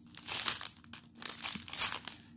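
Clear plastic drill bags crinkling in a string of irregular bursts as they are handled.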